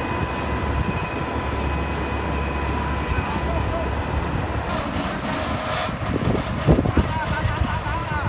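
Diesel engine of a tracked Mitsubishi MF61 asphalt paver running steadily as the machine crawls up onto a trailer deck. Men's voices join in near the end.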